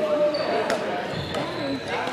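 People talking in the background in a gymnasium, with two sharp clicks a little over half a second apart.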